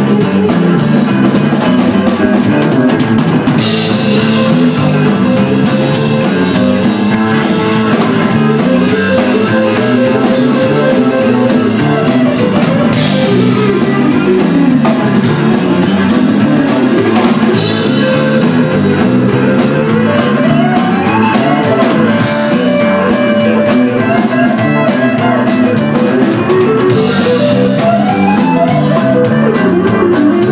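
A live band playing loudly: drum kit, electric bass and electric guitars, with several cymbal crashes. In the second half a lead guitar line glides up and down in pitch.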